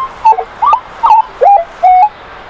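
Minelab E-Trac metal detector in all-metal mode giving a quick run of short squeaky tones, about three a second and jumping in pitch, as the coil sweeps over iron targets: each squeak is a piece of buried iron.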